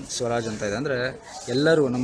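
A man speaking, his words not picked up by the recogniser.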